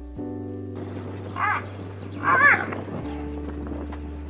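Background music of held chords, with two short wavering yelps from a hyena being chased by lions, about a second and a half and two and a half seconds in, the second louder, over a hiss of field noise.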